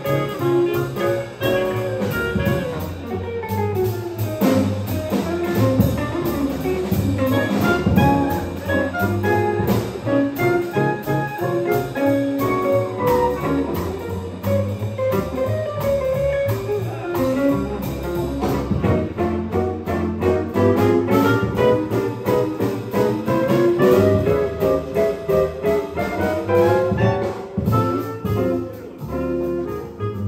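A small jazz combo playing live: piano, upright bass plucked, archtop guitar and drums, with a clarinet playing for part of the time. The drums keep time on the cymbals with steady strokes.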